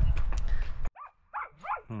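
A burst of rushing noise cuts off abruptly about a second in, followed by a small dog whimpering: three short, falling whines.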